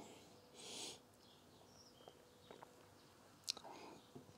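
Near silence: one short, faint breath about half a second in as a glass of beer is held up to the face to be nosed and tasted, then a few faint mouth clicks.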